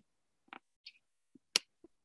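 A handful of short, sharp clicks over near silence, the loudest about one and a half seconds in.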